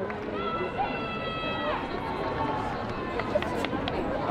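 Crowd in the stands chattering, with one long, high-pitched cheer from a single voice that starts about a third of a second in and falls away near the two-second mark.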